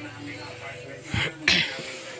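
A person sneezing close to the microphone: a shorter burst about a second in, then a louder burst with a hissy tail right after it.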